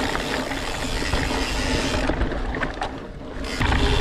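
Scott Spark full-suspension mountain bike descending a rocky dirt singletrack: tyres rolling over dirt and stones, with continuous clicking and rattling from the bike's drivetrain and frame, over a low rumble of wind on the camera.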